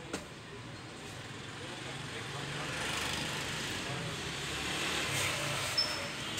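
A road vehicle passing, a rushing noise that swells to its loudest around the middle and eases off. A couple of light clicks of plastic clothes hangers being handled come just after the start and near the end.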